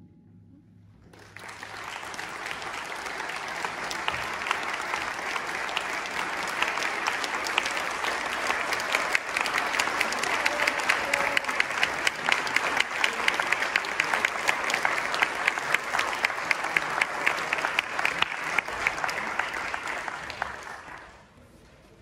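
Audience applauding: after a moment of near silence, clapping breaks out about a second in, builds to steady applause, and dies away near the end.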